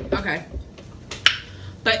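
A glass of iced drink handled on a tray: a brief rustle at the start and two sharp clicks a little over a second in. A woman starts speaking near the end.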